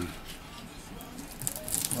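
Faint crinkling and small ticks of paper masking tape being peeled off the edge of a guitar fretboard and crumpled in the hand, taken off while the new lacquer is still soft.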